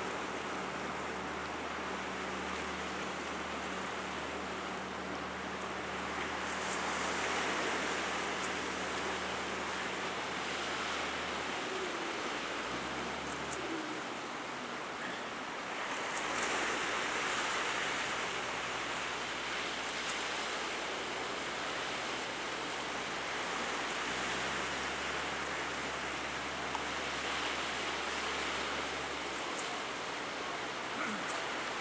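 Ocean surf washing against the shore, with wind on the microphone; the wash swells about seven and again about sixteen seconds in.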